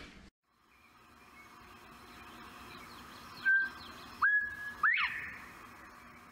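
Clear whistled notes over a faint steady hiss: a short held note, then a longer one that rises and holds, then a quick upward sweep.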